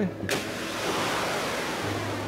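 Stardust rocket's hybrid motor firing at liftoff: a steady rushing noise that comes in about a third of a second in and holds.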